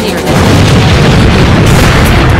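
Battle sound effects: booming explosions and gunfire over music, swelling louder about a third of a second in and staying loud.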